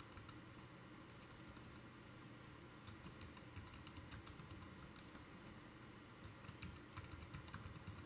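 Faint computer keyboard typing: short runs of keystrokes about a second in, around three to four seconds in, and again from about six to nearly eight seconds, as a password and its confirmation are typed.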